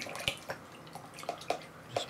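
A paintbrush being rinsed in a pot of water: a few small splashes and light knocks of the brush against the container.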